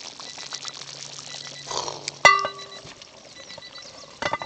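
Stew bubbling and simmering in a cast-iron Dutch oven on campfire coals, with fine popping throughout. About two seconds in there is one loud metallic clink that rings briefly.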